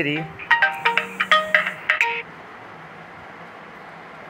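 A short electronic ringtone-like melody of clear stepped notes lasting under two seconds, then a faint steady hiss.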